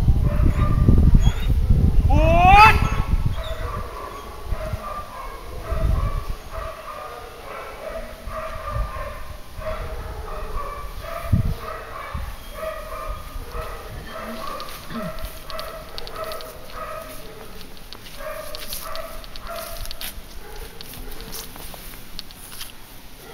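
Dog barking in a steady series of short barks, about one and a half a second, from about six seconds in. Before that a rising whine-like call and rumbling noise.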